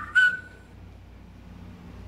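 A short high whistle-like tone, the tail of a quick run of such tones, fades out within the first second. Faint steady room noise follows.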